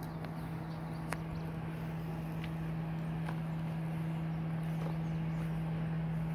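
A steady low hum throughout, with a few soft, irregular steps on gravel.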